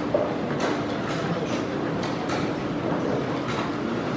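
Wooden chess pieces knocking on a wooden board and chess clock buttons being pressed during a fast blitz game: a handful of short, sharp clicks over a steady background hum.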